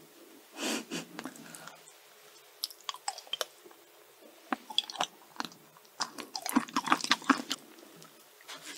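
Close-miked mouth sounds of a person chewing soft cake: scattered wet clicks that grow dense and loudest in the last two seconds, with an audible breath about half a second in.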